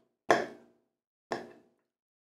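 Metal fork striking the plate twice, about a second apart: short clinks that ring briefly, the first louder.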